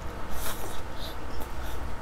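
Close-miked slurp as a mouthful of saucy instant noodles is sucked in, about half a second in, followed by wet chewing with soft mouth clicks.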